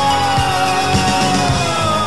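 Instrumental passage of a 1980s rock song: a steady drum beat under a single long held lead note that slowly slides down in pitch.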